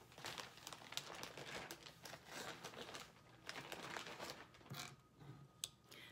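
Soft, irregular crinkling and rustling as a cross-stitch project is handled, a stream of small crackles with no steady rhythm.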